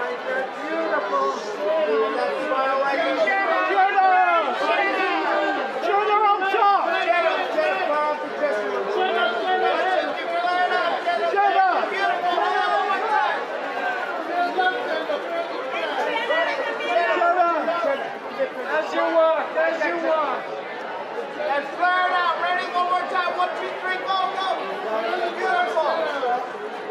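Many voices talking and calling out over one another: a pack of photographers shouting to the person they are photographing, the words mostly lost in the overlap.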